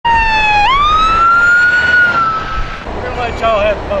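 Emergency vehicle siren: one tone that dips, sweeps sharply up about half a second in, holds high and fades out a little after two seconds in.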